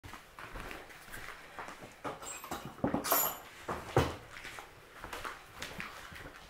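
Indian pariah dog making dog sounds as it greets a person on coming out of its crate, amid irregular knocks and scuffs, the sharpest about three and four seconds in.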